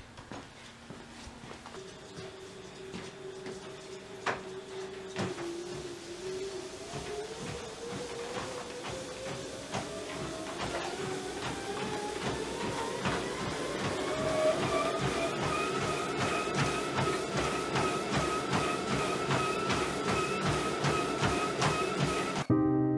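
Motorised treadmill speeding up: its motor whine rises steadily in pitch over about ten seconds and then holds. Footfalls on the belt quicken into a steady running rhythm.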